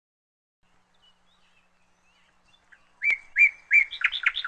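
Birds chirping: faint twittering about a second in, then three loud, bright chirps about three seconds in, with faster chirps following near the end.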